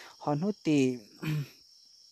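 A person speaking in short phrases that stop about a second and a half in, leaving a pause. A faint steady high-pitched hum runs under the speech.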